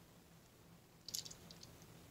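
Near silence broken by a faint short click about a second in and a few softer ticks: handling noise from a small die-cast model car being turned over in the fingers.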